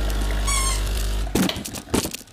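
Espresso machine pump running with a steady low hum as the shot finishes, cutting off suddenly about one and a half seconds in. A few sharp knocks of cup and machine handling follow.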